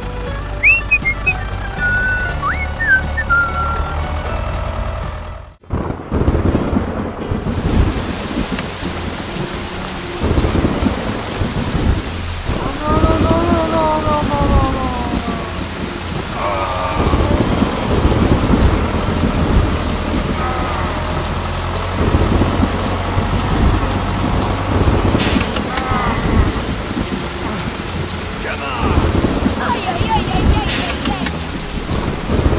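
Background music for the first few seconds, then it drops out and a rainstorm sound comes in: steady rain with low rumbles of thunder and a sharp thunderclap near the end.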